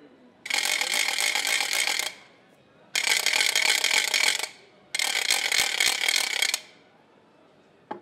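A town crier's handbell rung hard in three bursts of about a second and a half each, the clapper striking rapidly, with short pauses between them.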